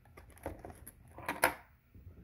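A run of small plastic clicks and knocks as a USB charger and its cable are handled and plugged in, with one sharper click about one and a half seconds in.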